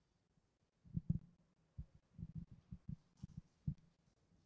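A series of soft, irregular low thumps, about a dozen in three seconds, starting about a second in.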